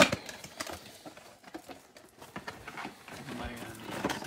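Clear plastic shrink wrap crinkling and tearing as it is pulled off a trading-card hobby box, with a sharp knock at the start as the box is picked up.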